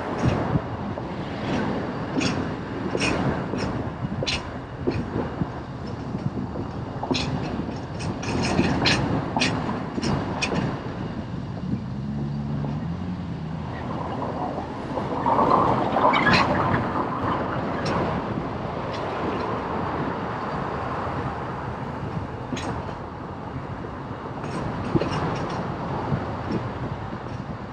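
A vehicle moving along a city street: steady running and road noise with frequent sharp rattles and clicks, a short low tone about halfway, and a louder stretch about two-thirds of the way through.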